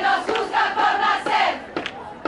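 Women's choir chanting a phrase in unison for about a second and a half, their voices holding steady notes together. Sharp claps keep a beat of about two a second and carry on after the chant stops.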